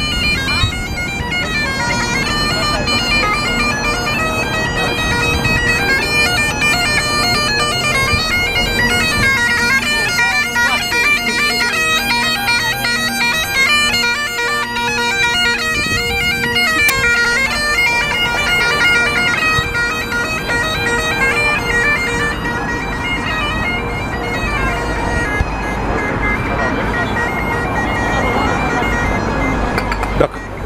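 Bagpipes playing a tune over their steady drones. Near the end the piping fades and street traffic and voices take over.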